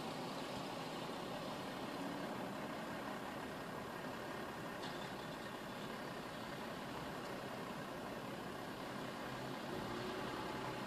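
Steady low hum of a car idling while stopped at a traffic light, heard from inside the cabin.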